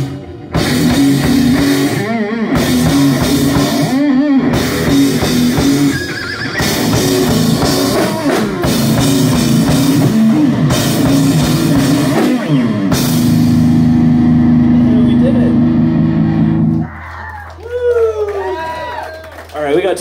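Live heavy rock band, with distorted electric guitars, bass and drum kit, playing loud with short stops in the first few seconds. It ends on a held, ringing chord that cuts off sharply about three-quarters of the way through. A low amplifier hum and a voice follow.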